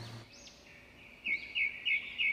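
Bird chirping: a run of short, evenly repeated chirps, about three a second, starting about a second in. The room sound drops out just before, as at an edit where a transition sound is laid in.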